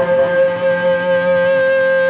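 Background music: a single sustained note, held steady.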